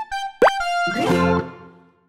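Light plucked background music with a quick rising cartoon pop sound effect about half a second in; the music fades out to silence near the end.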